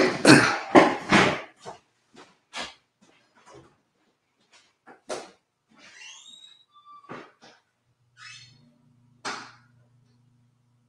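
A man clears his throat and coughs, then scattered light knocks and a few short squeaks as he gets up from his chair and moves away. A faint low hum comes in near the end.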